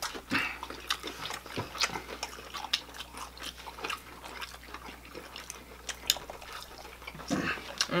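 Several people eating fried chicken wings close to the microphone: scattered sharp clicks of biting, chewing and lip smacks. A short hummed "mmm" comes near the end.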